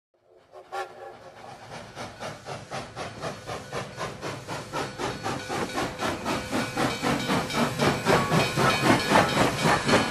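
Rhythmic intro of a music track fading in, a chugging pulse of about four beats a second that grows steadily louder.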